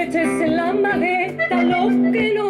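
A woman singing live with her folk band accompanying her. Her voice is the loudest part: she slides up into a note at the start and then sings a wavering, ornamented line.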